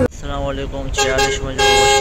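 A vehicle horn sounds once near the end, a single held tone of about half a second and the loudest thing here, after some talking voices.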